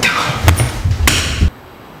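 A few loud knocks and thuds over a low rumble, cutting off abruptly about one and a half seconds in.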